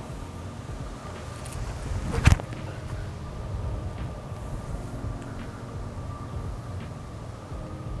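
Strong wind buffeting the microphone over a steady rumble of semi-truck traffic on a nearby road, with one sharp thump a little over two seconds in.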